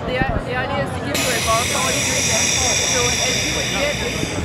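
Drinkworks Home Bar by Keurig carbonating with high-pressure CO2: a steady whoosh of gas starts about a second in and holds, over background voices.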